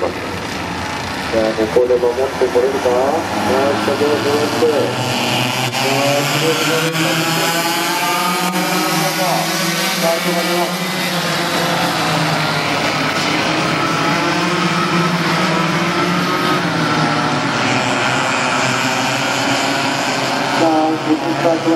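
A pack of Yamaha cadet-class two-stroke racing kart engines running past together, many overlapping engine notes rising and falling in pitch as the karts accelerate and lift.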